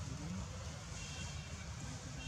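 Steady low outdoor background rumble, with a faint high-pitched tone about a second in that lasts about half a second.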